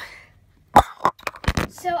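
A sharp knock about three quarters of a second in, followed by a few softer knocks, as the phone recording is handled and set back in place; a girl starts speaking at the very end.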